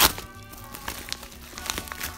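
A padded mailer crinkling and tearing as hands pull it open, with one loud sharp crackle at the very start and smaller crinkles after it. Background music plays underneath.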